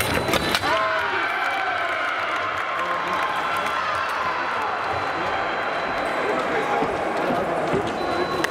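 A few sharp clicks and knocks from the foil attack and footwork about half a second in, then a long held shout after the touch that bends in pitch for about four seconds, over the hall's background noise.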